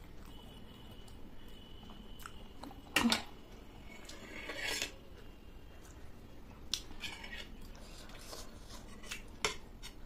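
Metal spoon and fork clinking and scraping on a ceramic plate while cutting into momos, with chewing in between. A sharp clink about three seconds in is the loudest sound, and a few lighter clicks follow.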